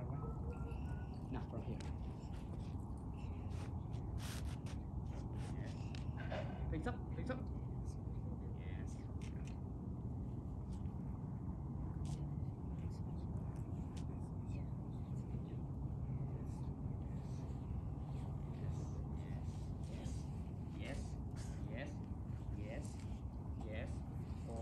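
Light scattered scuffs and taps of sneakers and a soccer ball on concrete over a steady low background rumble, with a few faint voices early on.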